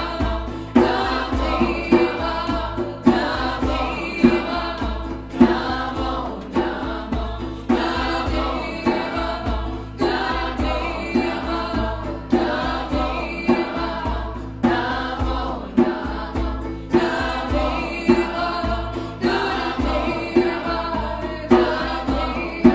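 A group chanting a kirtan mantra, voices singing together over a steady low drum beat whose strongest accent comes about every two seconds.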